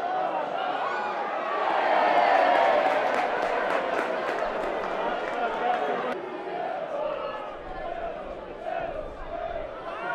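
Football crowd in the stand shouting and calling out, many voices overlapping, with a rapid run of sharp claps between about two and six seconds in. The sound changes abruptly about six seconds in at an edit, then the crowd voices go on more thinly.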